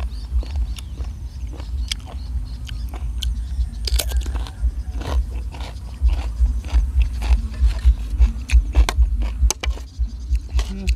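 Close-up chewing and biting of crunchy raw apple-snail salad (koi hoi cherry) and fresh vegetables: a string of short, crisp crunches and clicks, thickest in the second half.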